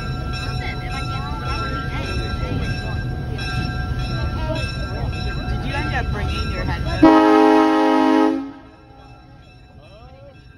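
A steady low rumble with voices under it, then one loud train horn blast about seven seconds in that lasts about a second and a half and stops abruptly, leaving it much quieter.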